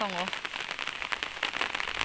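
Steady rain pattering: a dense run of small drop impacts.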